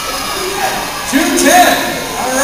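Indistinct talking in a large, echoing hall: several voices overlapping, with one voice louder about a second in.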